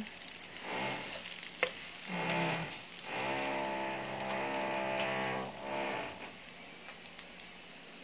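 Sliced garlic sizzling in hot oil in a frying pan. Over it come several drawn-out, low, steady voice-like calls, the longest about two and a half seconds from about 3 s in, and a single sharp click near the 1.6-second mark; the sizzle is left on its own over the last two seconds.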